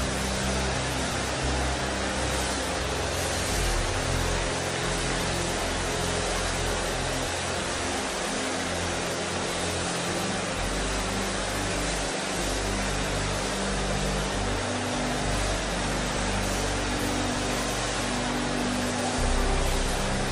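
A large congregation praying aloud all at once, a steady wash of many voices with no single voice standing out, over soft held musical chords that change every second or two.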